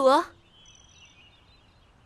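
A woman's short call at the very start, then faint birds chirping in the background.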